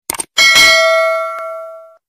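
Two quick clicks, then a single bright bell ding that rings and fades away over about a second and a half: a notification-bell sound effect for tapping a subscribe bell icon.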